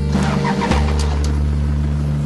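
Car engine idling with a steady low hum, under background music, with some brief rustling and clicks in the first second.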